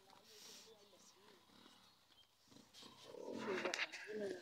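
Indistinct voices of people talking at a distance, with a louder, rougher voice rising near the end.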